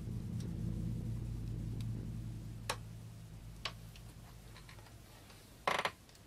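Faint sounds of a clay sculpture being worked by hand: a low rubbing that fades away over the first few seconds, a few scattered light clicks, and one short louder noise near the end.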